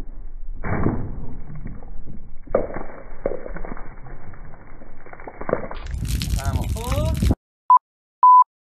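People's voices with the muffled, thin sound of a phone recording. Near the end the sound cuts off abruptly, and a short, steady high-pitched beep follows.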